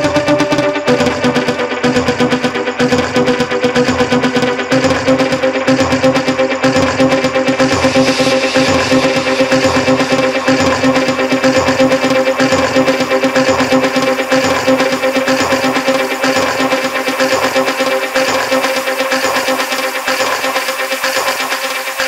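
Melodic techno track: held synthesizer chords over a steady, regular beat, with the chord shifting about a second in. A brighter hissing layer builds in from about eight seconds, and the bass thins out near the end.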